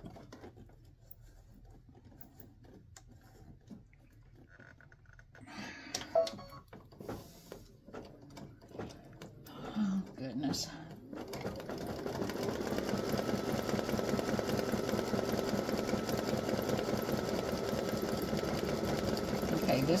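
Baby Lock Visionary embroidery machine starting about eleven seconds in and stitching steadily, sewing a zigzag around the edge of an appliqué patch. Before that there are only a few light clicks and handling sounds.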